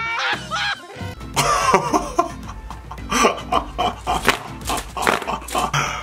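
Background music under a mix of excited voices and laughter, with short sharp outbursts throughout.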